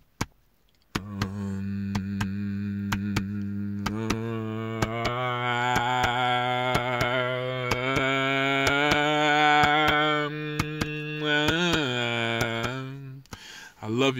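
A man's voice intoning one long chant-like tone on a steady low pitch, starting about a second in. The vowel shifts as he holds it, the pitch wavers briefly near the end, and then it fades.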